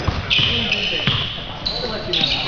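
A basketball bouncing on a hardwood gym floor in a large hall, with men's voices and a couple of long, high squeaks.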